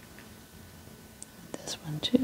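Faint room tone, then near the end a small click and a short whispered murmur from a person's voice.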